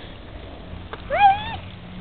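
A boxer puppy gives one short, high-pitched whine about a second in, lasting about half a second.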